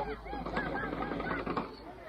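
Repeated short honking bird calls.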